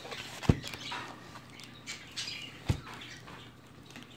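Wrapping paper rustling and crinkling as a present is unwrapped by hand, with two soft thumps about half a second and nearly three seconds in.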